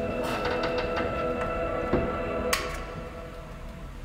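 Cassette tape loop playing sustained notes that fade away in the second half, with a run of small clicks early on, a knock near the middle and a sharp click about two and a half seconds in.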